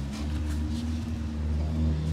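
A motor running with a steady low drone, with a few faint clicks over it.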